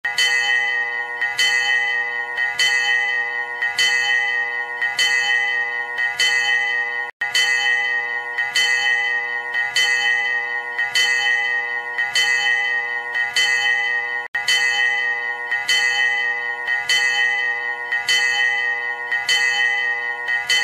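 A bell struck over and over at a steady pace, about three strokes every two seconds, its tone ringing on between strokes. The ringing cuts out for an instant twice.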